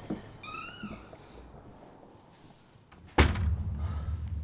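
A short high squeak that rises and falls about half a second in, then a sudden loud thud about three seconds in, followed by a low steady rumble.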